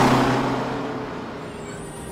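School bus going past, its engine hum and rushing road noise fading away steadily.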